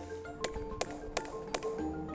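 A hammer tapping a sap spile into a maple trunk: about five sharp, evenly spaced taps, over background music with sustained notes.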